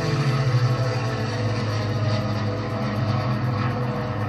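Film soundtrack played back over a speaker: a steady, loud drone of a WWII propeller fighter plane's engine, with the score underneath.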